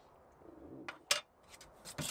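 Screwdriver prying at the lid of a metal paint tin: a few sharp metallic clicks about a second in and several more near the end.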